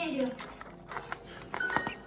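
Small clicks and handling noise as jumper wires are pushed onto the header pins of an Arduino shield, under background music.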